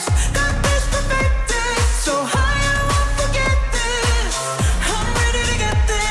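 Slowed-down, reverb-drenched K-pop song with a woman's sung vocal over a steady dance beat, its bass kicks falling in pitch about twice a second.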